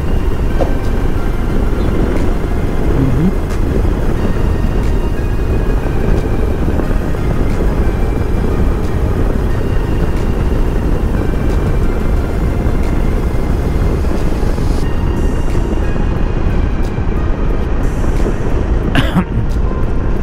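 Steady wind rush and road noise while riding a Yamaha NMAX scooter at cruising speed, with faint background music underneath.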